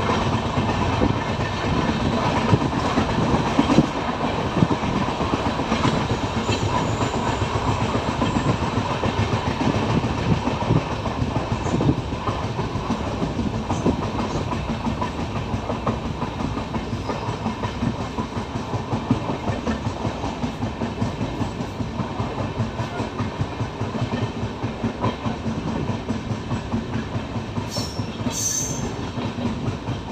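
Passenger train running on the rails, heard from aboard: a steady rumble with wheels clattering over the rail joints, growing gradually quieter as the train slows on its approach to a station. A few brief high squeals sound near the end.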